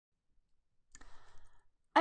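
About a second of near silence, then under a second of faint clicking and rustling noise. A woman's voice starts at the very end.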